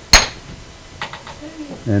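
An antler billet striking the edge of a stone once, a sharp clinking knock, in percussion flaking to knock a flake off the stone. A few faint clicks follow about a second later.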